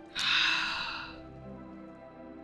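A loud breath, sharp at its start about a quarter second in and fading away over most of a second, over soft background music with long held tones.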